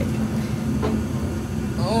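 Steady low mechanical hum with a faint steady tone in it, and no distinct event standing out.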